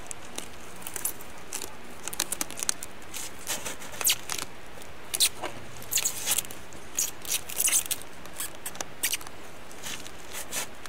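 Packing tape pulled off the roll and wrapped around a plastic gallon milk jug, heard as irregular short crackles and tearing bursts, with the jug's thin plastic crinkling as it is turned.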